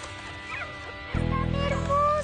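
Puppies in a cardboard box whimpering in short high cries. About a second in, a sustained music chord comes in and becomes the loudest sound.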